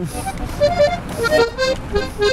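Accordion playing a short run of separate notes, with street traffic underneath.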